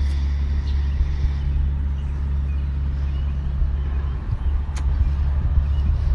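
A steady low hum, with one sharp click a little before the end.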